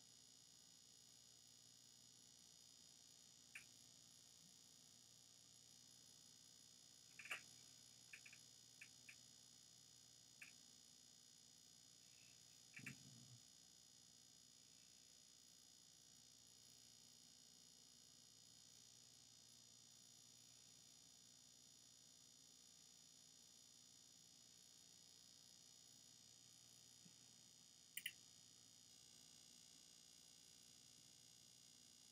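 Near silence: steady faint hiss and low hum, broken by a handful of short, faint clicks, a cluster of them around the middle and a double click near the end.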